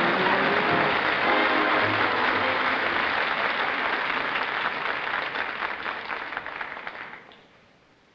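Audience applauding over live band music as a presenter walks on. The music drops out after a few seconds and the applause fades away near the end.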